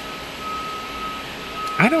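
A single high-pitched electronic tone, held steady with brief dips, over a low even hiss of street noise.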